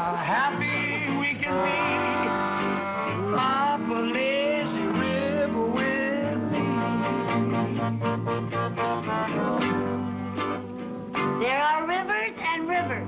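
Small combo playing an upbeat tune on two archtop electric guitars, accordion and upright bass, with a walking bass line under the chords.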